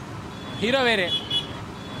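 Background road-traffic noise, with one short voice-like exclamation about halfway through whose pitch rises and then falls.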